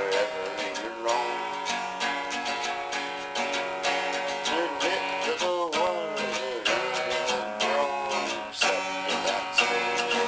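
Steel-string acoustic guitar strummed in a steady chord rhythm.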